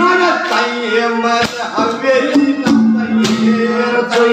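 Haryanvi ragni: a man singing into a microphone over a steady held drone, with sharp drum strokes from the accompanying musicians.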